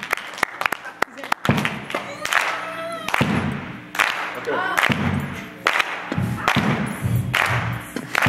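Church congregation clapping and cheering. About a second and a half in, loud regular beats start, roughly one every 0.8 seconds, with music.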